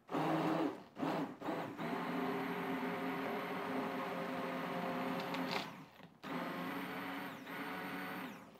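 Hand-held stick blender running in a pot of thick tomato soup, puréeing it: a few short pulses at first, then a steady motor whine, a brief stop about six seconds in, and on again.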